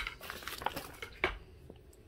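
Sheets of paper being handled and torn: a sharp click right at the start, then faint rustles and short crinkles, with one fuller tear about a second and a quarter in.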